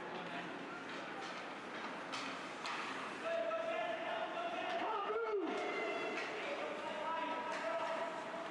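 Hockey sticks and puck knocking sharply a couple of times, then spectators' voices shouting long, drawn-out cheers from a little past the middle, one voice bending up and down in pitch.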